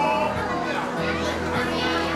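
Background music with a steady low bass line, under a hubbub of voices that includes children's chatter.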